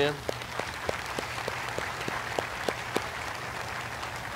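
A congregation applauding, with one person's claps close by at about three a second standing out over the crowd's clapping. The close claps stop about three seconds in and the applause dies down.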